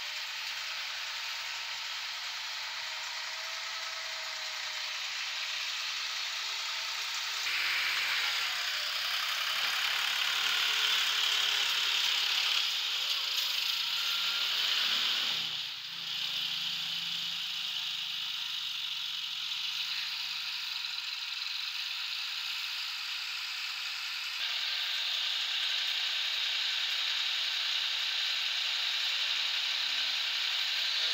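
Engines of a tractor and motor-rickshaws running steadily on a muddy road, with a rattling clatter. It grows louder about seven seconds in and dips briefly around sixteen seconds.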